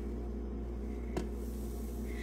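Steady low hum with one faint click about a second in; the milk being poured makes no clear sound of its own.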